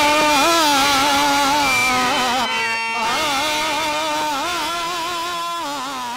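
Male voice singing a Telugu drama padyam in a drawn-out, ornamented classical style, long notes wavering up and down, with a brief break near the middle. The music fades steadily toward the end.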